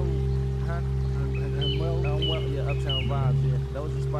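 Hip-hop instrumental beat playing: a deep sustained bass held steady under short, high-pitched melody notes that step up and down, repeating about every half second.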